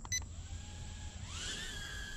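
A short beep, then the RH807H ducted-fan mini drone's motors spinning up for a one-key takeoff: a thin whine that rises in pitch in the second half and then holds steady as the drone lifts off.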